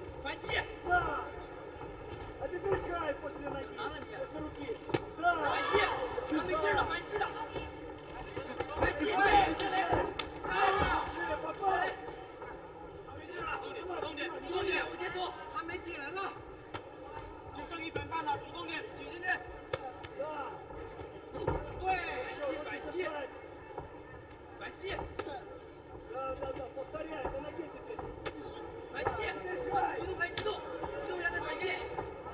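Men's voices calling out over arena crowd noise during a kickboxing bout, with a few sharp thuds of punches and kicks landing.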